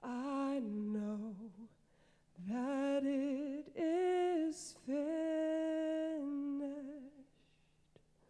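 A woman singing solo and unaccompanied into a handheld microphone: long held notes with vibrato, in a short phrase and then a longer one after a brief pause about two seconds in.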